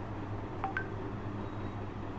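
Steady low electrical hum, with two short faint beeps under a second in, the second higher than the first.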